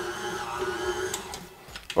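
KitchenAid Artisan 5-quart 325 W stand mixer running at medium speed with its dough hook kneading a stiff dough, a steady motor whine. The motor winds down about a second and a half in as it is switched off, with a click or two near the end.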